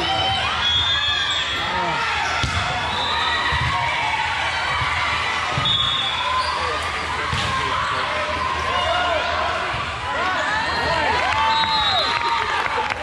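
Busy indoor volleyball hall: shoes squeaking on the sport court over and over, balls being struck and bouncing, and players' and spectators' voices echoing in the large room.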